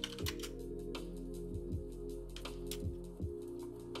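Irregular computer keyboard clicks over quiet background music with sustained tones.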